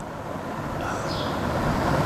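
A passing motor vehicle: a low rumbling noise that grows steadily louder.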